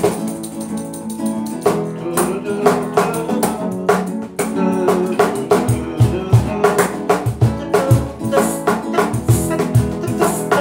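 Acoustic guitar strumming the opening chords of a song, joined about five and a half seconds in by deep cajón bass strokes in a steady rhythm.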